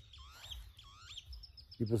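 Birds chirping: several quick bending chirps in the first second, then a fast run of short high notes toward the end.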